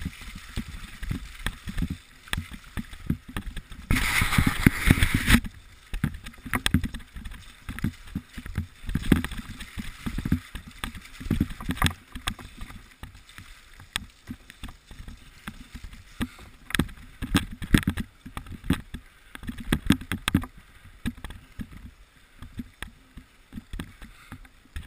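Mountain bike riding over a wet, muddy trail: tyres rolling and splashing through mud and puddles, with frequent knocks and rattles of the bike over bumps. A louder rush of noise lasting over a second comes about four seconds in.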